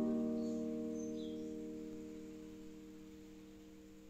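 An acoustic guitar's last strummed chord ringing out and fading away slowly and evenly, with no further strokes.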